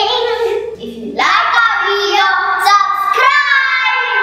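Children singing a short tune in held, gliding notes, with a brief break about a second in.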